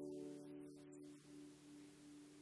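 The strings of a 33-string single-action lever harp ringing on after a plucked chord, several notes together, slowly dying away until only a few faint notes remain.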